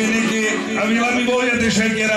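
A man's voice amplified through a handheld microphone, speaking or half-singing continuously in long phrases.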